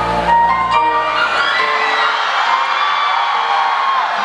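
Live concert music in the break between sung lines: the band plays on, its low end dropping out about a second and a half in, while the audience cheers and one voice holds a long high whoop.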